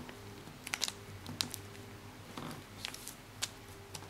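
A square sheet of origami paper being folded by hand: soft crinkling with scattered sharp little paper crackles, about half a dozen over the few seconds.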